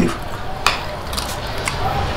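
Metal spoons scraping and clinking against a shared plate of food, with one sharp clink a little over half a second in.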